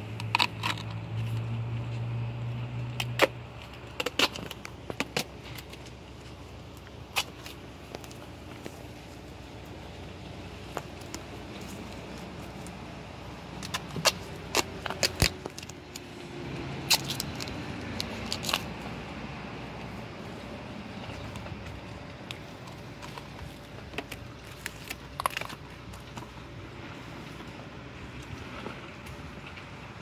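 Black plastic trash bag and garden fabric liner crinkling and rustling as they are handled and pressed into a laundry hamper, with sharp crackles scattered throughout.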